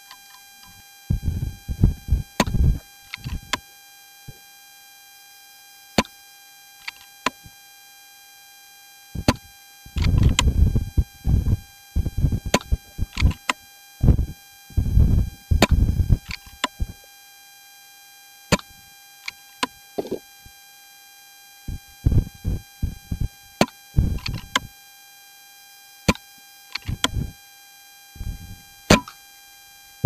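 Wind buffeting the microphone in irregular gusts, over a steady electronic whine from a faulty microphone. A few sharp clicks stand out between the gusts.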